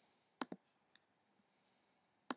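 Computer mouse clicks: a quick, sharp double click about half a second in, then a fainter single click about a second in.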